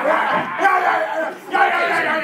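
Several men's voices shouting and hollering at once, loud and overlapping, without clear words.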